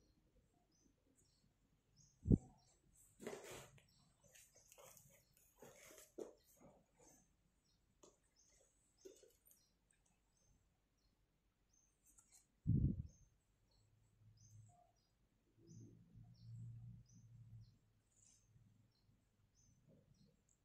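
Faint handling noise of a crocheted cotton cap being moved by hand on a satin cloth: rustling from about three to seven seconds in, and two soft thumps, about two seconds in and again near thirteen seconds. Short high chirps recur faintly in the background.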